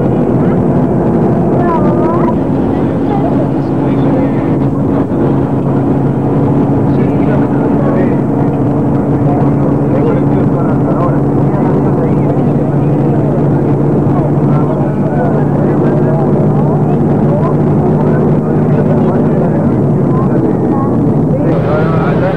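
Coach bus engine droning steadily, heard from inside the moving bus; its pitch shifts slightly a few times.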